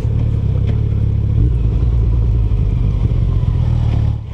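2018 Yamaha FJR1300's inline-four engine running steadily while riding along a town street, under wind and road noise.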